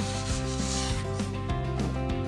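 A brief rubbing, scraping noise for about the first second, fading out, over steady background music.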